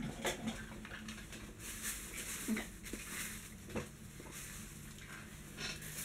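Plastic and cardboard packaging of a phone stand rustling and crinkling as it is taken out of its box, with a couple of soft knocks.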